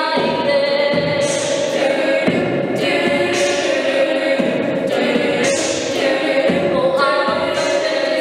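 All-female a cappella group singing a pop arrangement: a lead voice over sustained backing chords that change about every two seconds. Vocal percussion adds a hissing cymbal-like sound about every two seconds.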